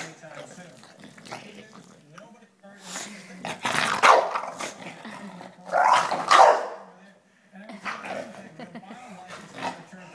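English bulldog growling steadily as it bites and tugs at a sneaker on a person's foot, breaking into two loud bursts of barking and growling about four and six seconds in.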